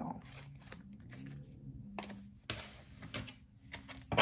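Tarot cards handled off-camera while a clarifier card is drawn: a few faint taps and rustles, the clearest about two seconds in, over a faint low hum.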